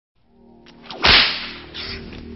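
Film-leader countdown sound effect: a loud falling whoosh about a second in, over a low steady hum, then a shorter hiss burst near the end.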